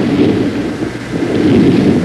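Loud, steady low rumbling noise with no distinct events.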